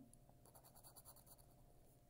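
Faint scratching of a coin rubbing the coating off a scratch-off lottery ticket, in quick short strokes.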